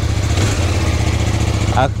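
CFMOTO 800NK's 799 cc parallel-twin engine idling steadily.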